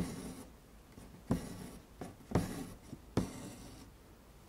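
Hand embroidery: a needle pierces the taut fabric in an embroidery hoop with a sharp tick, followed each time by the short rasp of embroidery floss being drawn through. This happens four times.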